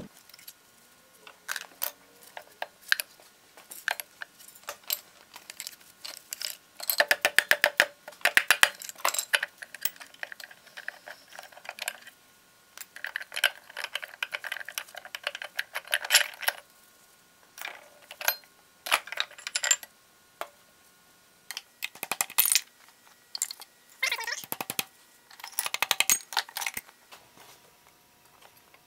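Metal-on-metal clinking and rattling from the steel spindle, gears and cone pulley of an Atlas Craftsman lathe headstock being worked loose and slid apart by hand. It comes in bursts of quick clicks with short pauses between them, busiest about a quarter of the way in.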